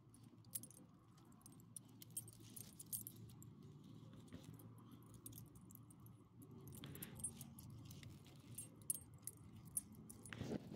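Faint, light metallic jingling of a small dog's collar tags, in scattered short ticks as the dog moves about on its leash.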